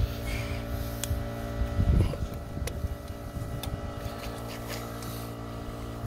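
A steady mechanical hum, with a few light metallic clicks and a louder knock about two seconds in, as a lug nut is started onto an ATV wheel stud.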